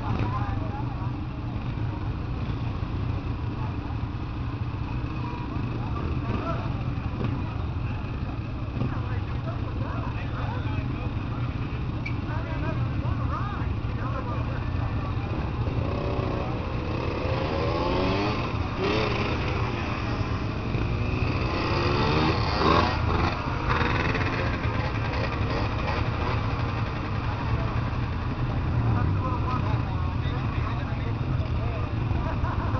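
Racing engines heard passing about halfway through, several at once, their pitch rising and falling as they go by, loudest around three-quarters of the way in, over a steady low rumble.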